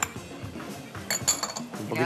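A few light clinks of a metal spoon against a small ceramic dish, over background music.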